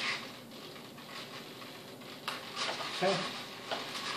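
Faint clicks and handling noise from small DIP switches on an RC glider's stabilizer unit being flipped by hand, with one sharper click a little over two seconds in. The switches are being set to reverse the stabilizer's correction direction for the elevator and ailerons.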